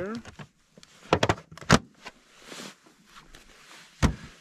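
Gear being put back into a hard plastic storage tote and the tote closed up: a few sharp knocks a little over a second in, another soon after, then a short rustle.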